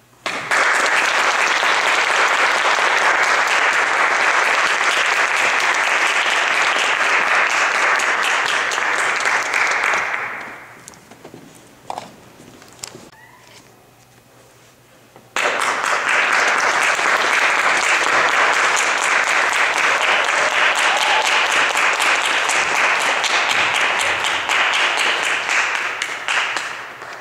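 Audience applauding, in two stretches of about ten seconds each, with a quieter gap of a few seconds between them that holds a few faint knocks.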